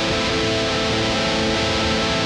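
Hardcore punk music: the band's guitars hold a steady, sustained passage between sung lines, with no vocals.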